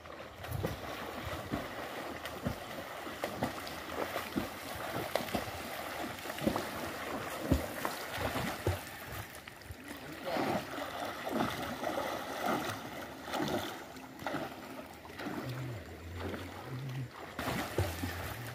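A person swimming in a stream pool, arms and legs slapping the water in a run of irregular splashes over the running water.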